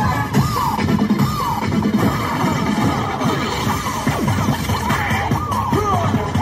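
Recorded music for a cheerleading routine, played loudly, with a melody that rises and falls throughout.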